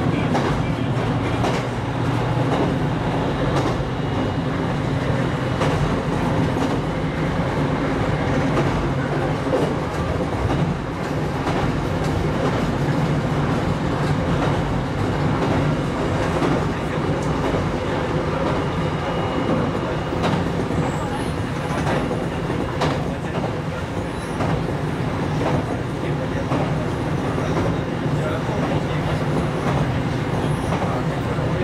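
Train running along the track, heard from inside the car behind the driver's cab. There is a steady rumble of wheels on rail with a low hum, and scattered clicks as the wheels pass over rail joints and points.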